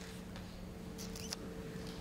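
Quiet auditorium room tone: a steady low hum with a few faint clicks and rustles about a second in.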